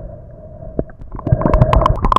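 Muffled underwater noise through a camera housing, low and dull, then from about a second in much louder splashing and bubbling water with many sharp clicks close to the camera.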